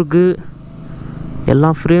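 Mostly a person talking, in two short stretches with a pause of about a second between them. During the pause only a faint, steady background noise is heard.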